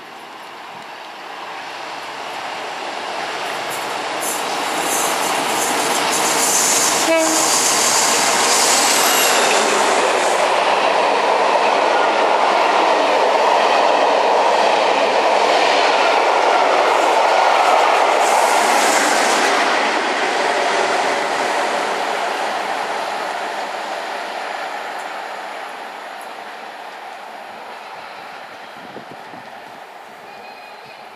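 Locomotive-hauled charter train passing through the station without stopping. Its noise builds over the first few seconds, stays loud for about fourteen seconds while the coaches go by, and fades away toward the end.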